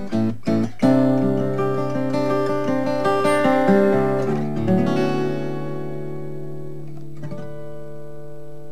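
Steel-string acoustic guitar played fingerstyle: a couple of quick strokes, then chords with melody notes over them, the last chord struck about halfway through and left ringing, slowly dying away.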